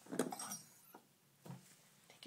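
A small stainless steel cup clinking and knocking against a hard sink-side surface as it is handled: a cluster of light clinks at the start, then two single knocks.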